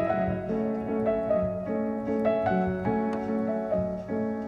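Background piano music: a slow melody of single notes over held chords.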